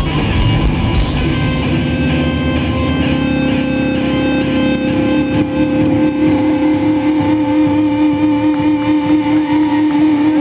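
Live rock band with electric guitars. About two seconds in the heavy low end drops away, leaving long held electric guitar notes that waver slightly in pitch.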